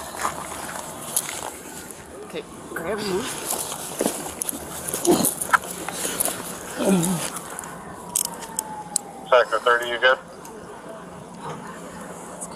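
Body-worn camera picking up a handcuffing struggle on the ground: clothing rubbing against the microphone, scattered clicks and knocks of gear and handcuffs, and short grunts and strained vocal sounds. A brief high wavering cry comes about nine seconds in.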